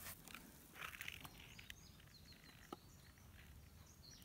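Near silence outdoors: a brief soft rustle of dry hay about a second in and a couple of small clicks, with faint high bird chirps in the background from about halfway through.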